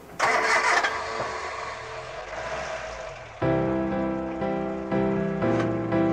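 An engine starting with a sudden burst of noise just after the start, fading away over about three seconds. Music with sustained notes comes in about three and a half seconds in.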